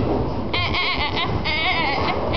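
A girl's high-pitched, wavering laughter in two shaky bursts, starting about half a second in.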